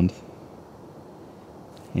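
Faint, steady background hiss with no distinct event, in a short pause between spoken words.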